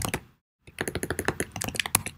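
Computer keyboard keystrokes: a short burst of taps, a brief pause, then a run of rapid keystrokes.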